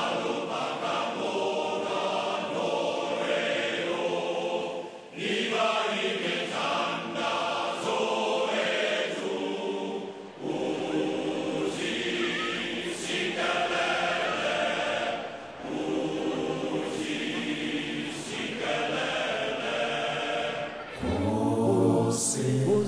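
A choir of voices singing in sustained phrases about five seconds long, with brief breaks between them. Near the end, lower voices come in and the sound grows fuller and louder.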